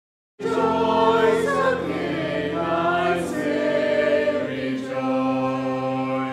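A church congregation singing a hymn together, with steady held accompanying notes underneath. The sound cuts in abruptly about half a second in.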